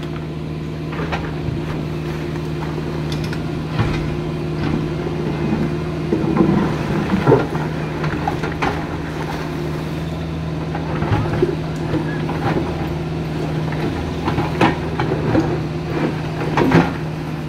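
Caterpillar mini excavator's diesel engine running steadily at working speed, with scattered knocks and scrapes of the steel bucket against river rocks, most of them around six to seven and a half seconds in.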